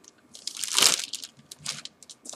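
Plastic ziplock bag filled with melted candy crinkling as it is picked up and handled, with one louder rustle a little under a second in amid small crackles.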